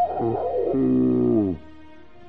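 Music: a loud, distorted electric guitar phrase with wavering, bent notes that ends about one and a half seconds in with a long downward pitch slide. Quieter backing music carries on after it.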